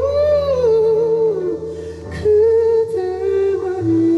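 Male vocalist singing a slow ballad live through a handheld microphone over soft band accompaniment, holding long notes with vibrato that swell and bend in pitch, with a brief break about halfway through.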